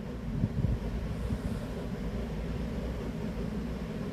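A steady low rumble of background noise, with nothing sudden or pitched in it.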